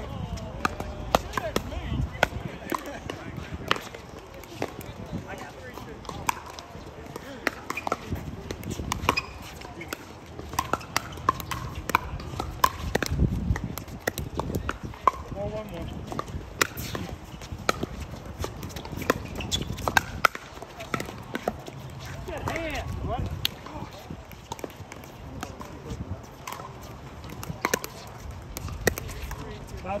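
Pickleball paddles striking a hollow plastic ball, sharp pops at irregular intervals with ball bounces among them, over distant voices.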